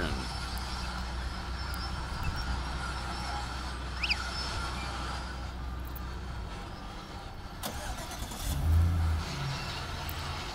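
A car engine running at idle, a steady low hum that fades out about seven seconds in. A short high chirp comes about four seconds in.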